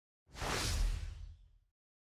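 Whoosh sound effect with a deep rumble underneath for an animated logo intro. It swells in about a third of a second in and fades out over about a second.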